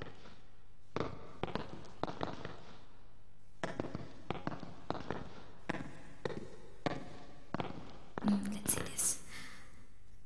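A run of sharp taps on a hard surface, two or three a second in uneven groups, over a low steady hum, with a short burst of whispering about eight seconds in.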